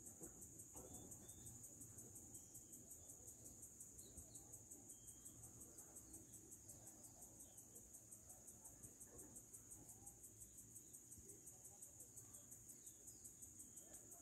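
Faint cricket song: a steady, high-pitched trill of evenly spaced pulses, about five a second, going on without a break.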